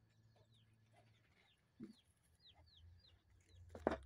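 Faint chickens: many short, high falling chirps and one low cluck just before the two-second mark. A brief knock or rustle comes near the end.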